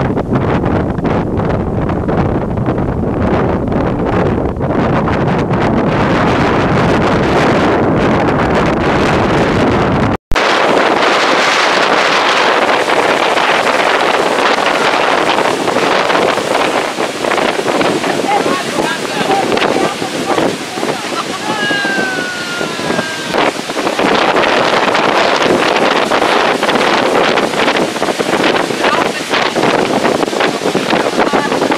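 Storm wind buffeting the microphone over rough sea surf breaking on the shore: a loud, continuous rushing roar. The deep wind rumble is heaviest at first. About ten seconds in the sound drops out briefly, and afterwards the hiss of the breaking waves comes through more clearly.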